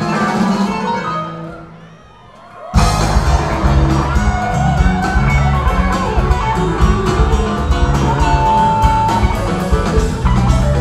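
Live rock band with drums, bass, electric guitar and keyboards playing an instrumental passage. The sound dies away to a brief lull about a second in, then the whole band comes back in at once just under three seconds in. A held high note sounds near the end.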